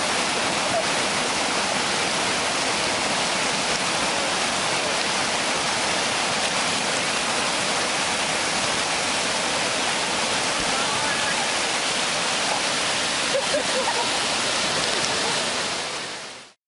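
Whitewater rapids rushing loudly and steadily, an unbroken rush of churning water, with faint voices heard briefly a couple of times.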